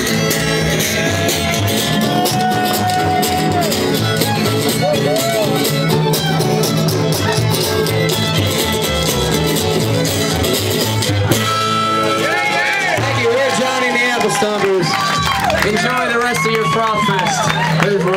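Live string band playing with a driving strummed rhythm: fiddle, upright bass and acoustic guitar. About eleven seconds in the strumming breaks off and voices come to the fore over the continuing low notes.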